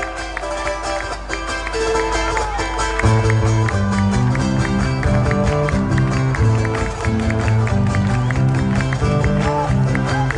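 Live orchestra with strings playing a lively piece with a steady beat; deep bass notes come in about three seconds in.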